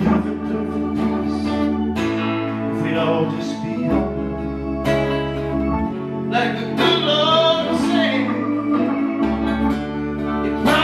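Live song: acoustic guitar strumming and a man singing, over sustained low chords that change about every two seconds.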